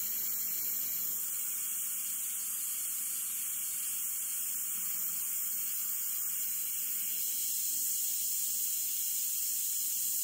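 Iwata CM-SB airbrush spraying: a steady, unbroken hiss of compressed air and acrylic paint as a second coat is laid on to make the colour more solid.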